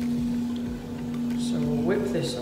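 Steady hum of a spray booth's ventilation fan, with masking tape being peeled slowly off a painted motorcycle fuel tank.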